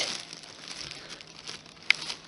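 A thin plastic carrier bag rustling and crinkling as a hand pulls a can out of it, with one short, sharp click near the end.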